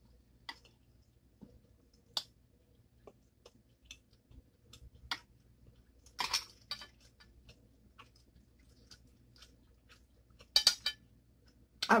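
Close-up eating sounds: scattered soft chewing and mouth clicks, with chopsticks clicking against the bowl. A short louder burst comes about six seconds in and another just before the end.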